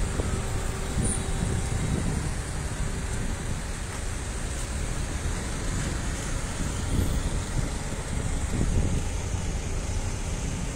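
Congested road traffic crawling in a jam: car and truck engines running with a steady low rumble of traffic noise, swelling a little twice near the end as vehicles pass close.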